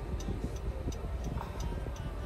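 Car turn-signal indicator ticking steadily, about three ticks a second, over the low rumble of the car.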